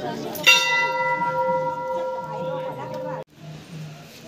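A large hanging metal temple bell is struck once about half a second in. It rings with a clear pitch and several higher overtones that die away slowly, then stops abruptly after about three seconds. A fainter earlier ring is still sounding at the start.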